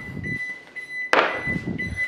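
A refrigerator's door-open alarm beeping in a high, steady, broken tone, with one loud thunk about halfway through as a plastic food container is knocked about near the kitchen bin.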